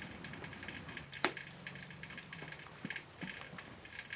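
Quiet handling of a hunting-suit pant-leg cuff, its zipper and button closure at the boot being worked, giving faint rustling and small clicks, with one sharp click just over a second in.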